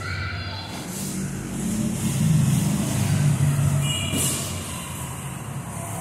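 A low, steady, engine-like hum that swells through the middle, with a brief high squeak about four seconds in.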